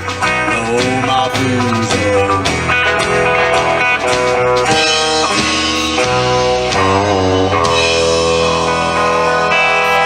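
Live country-rock band of electric and acoustic guitars, bass and drums playing the closing bars of a song, then settling into a long held final chord about three quarters of the way through.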